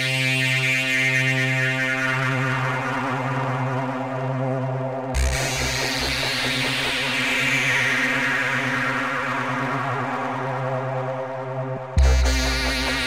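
Opening of a psychedelic trance track: a held synthesizer drone with a slowly sweeping filter. About five seconds in, a bright wash comes in with a few low bass pulses, then the filter slowly closes down again.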